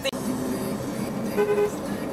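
Steady road and engine noise heard inside a moving car on a highway, with a short, steady tone about one and a half seconds in.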